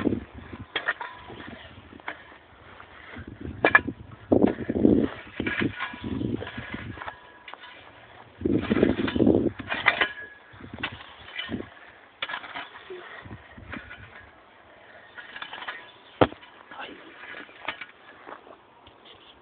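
A metal shovel scraping and digging into dry, stony soil and dropping scoops of earth back into a hole, in irregular strokes with clicks of stones on the blade and one sharp clack near the end.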